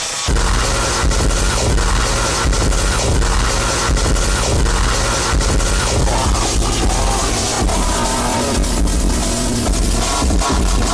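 Loud, dense electronic music with strong bass and a noisy texture filling the whole range, punctuated by frequent hits. It cuts out for a split second at the very start, then runs on without a break.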